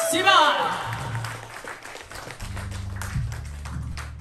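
Live audience applause, with a loud high sliding sound in the first half-second; the clapping thins out and a low steady hum comes up about two and a half seconds in.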